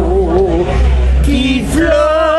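An older woman singing live, holding wavering notes with a wide vibrato, over a steady low rumble.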